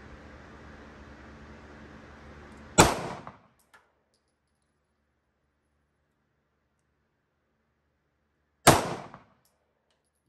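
Two pistol shots from a Browning Hi-Power 9mm, about six seconds apart, each a sharp crack with a short echo. A faint click follows the first shot.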